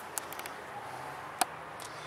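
Faint steady hiss with a few light clicks early on and one sharper tap about one and a half seconds in: handling and footstep noise from a camera being carried through the motorhome interior.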